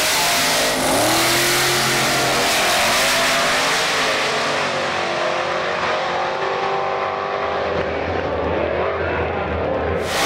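Drag-racing street cars at full throttle pulling away down the strip, the engine note climbing in pitch several times as they accelerate. From about halfway on the sound goes duller and steadier as the cars run off into the distance.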